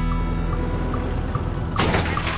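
A short sitcom music cue for a scene change, sustained. Near the end comes a loud rush of noise as hospital swinging double doors are pushed open.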